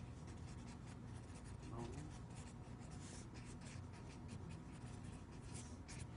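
Marker pen writing on a paper flip chart: a run of short, quick, faint strokes.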